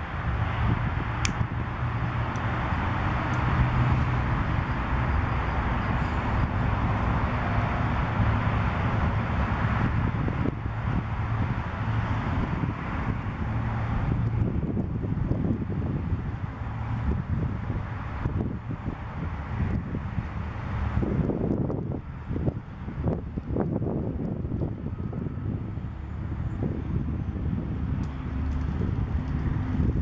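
Steady wind noise on the microphone with a low rumble. It gusts irregularly in the second half.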